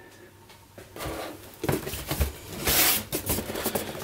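Cardboard rubbing and scraping as a boxed security camera is slid out of a cardboard shipping carton, starting about a second in, with the loudest scrape near the three-second mark.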